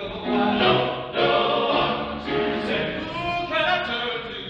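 Men's vocal ensemble singing together in several parts, the voices shifting pitch from note to note.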